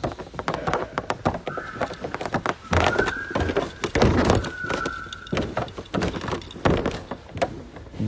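Dogs whining in three short high notes among many knocks and clicks, as the dogs move about close to the phone.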